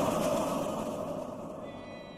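A crowd's chanting with the noha's music, fading out steadily and growing quieter throughout.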